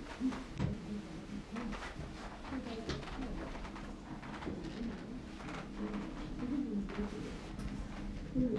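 Pigeons cooing, a run of short low repeated coos, over scattered faint clicks.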